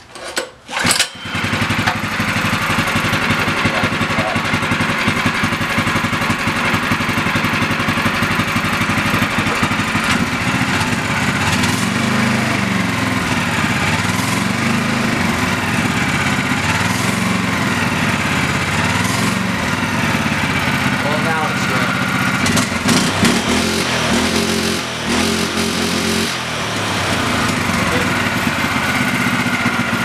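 Small single-cylinder gas engine being started: it catches about a second in and then runs steadily, its pitch rising and falling a few times in the middle as it is revved to test a centrifugal clutch on its output shaft.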